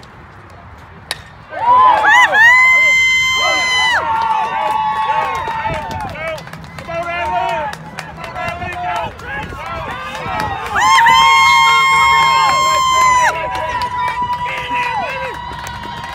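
A bat cracks against the ball once about a second in, followed by spectators and teammates yelling and cheering, with long drawn-out shouts. The shouting eases off in the middle and swells again at about eleven seconds.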